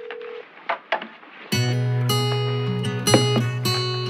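A steady telephone tone cuts off and two clicks follow. About one and a half seconds in, strummed acoustic guitar music starts suddenly over a steady low bass note and carries on.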